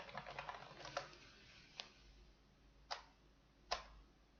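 Faint clicks from a computer keyboard and mouse: a quick run of taps in the first second, then three single clicks about a second apart.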